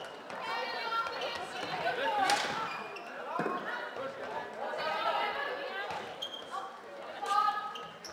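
People talking and calling out in a large sports hall during a floorball game, with a few sharp clacks of plastic sticks and ball on the court floor.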